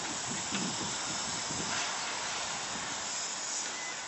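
Steam locomotive letting off a steady hiss of steam as it moves slowly along the track, with some uneven low rumble in the first couple of seconds.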